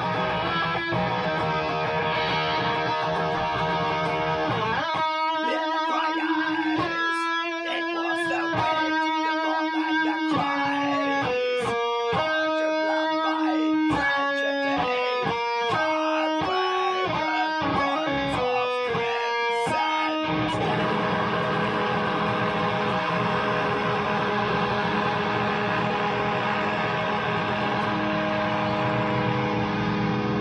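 Electric guitar played through a Joyo Zombie amp, with no drums behind it: dense distorted chords, then a single-note melodic line from about five seconds in, and thick chords again from about twenty seconds in.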